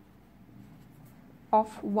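Felt-tip marker writing on paper, faint scratching strokes as a word is written out.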